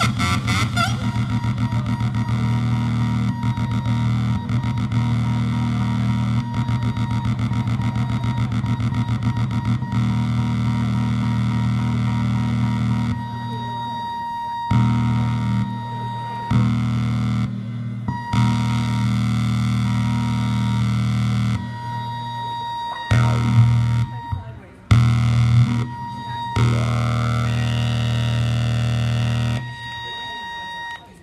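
Droning electronic noise from homemade circuit-board synths run through a small mixer. A steady low hum carries a fast buzzing pulse for the first ten seconds or so. In the second half the sound is switched on and off in blocks every second or two, with a thin high tone in some blocks, and it cuts out near the end.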